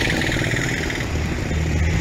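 Road traffic: a motor vehicle engine running steadily.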